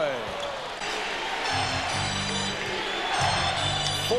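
Basketball arena crowd noise with music playing over the arena sound system; steady high notes and a low bass line come in and out in two stretches.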